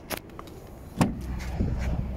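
The front door of a Volkswagen Golf Alltrack being opened. A small click from the handle comes near the start, then a sharp latch click about a second in as the door releases and swings open.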